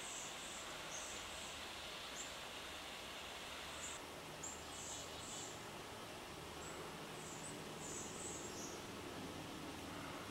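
Quiet outdoor ambience: a steady hiss with short, high-pitched chirps scattered irregularly through it.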